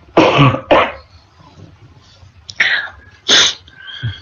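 A person coughing and clearing the throat into a voice-chat microphone: two coughs at the start and two more near the end. The reader has a hoarse voice.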